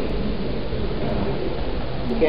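Steady low rumble of room background noise, with no speech.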